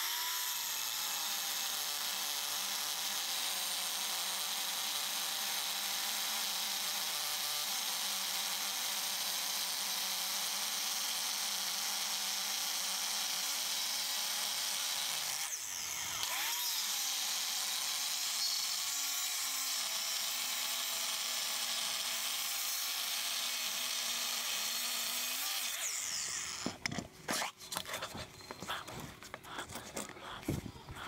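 Makita angle grinder with a five-inch cutting disc slicing through square steel tubing: a steady cutting noise with the motor's whine sagging under load. It eases off briefly about halfway, then bites again, and stops a few seconds before the end, giving way to irregular knocks and clatter from handling the grinder and tube.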